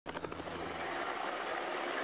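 Steady drone of the race's motor vehicles following the cyclists.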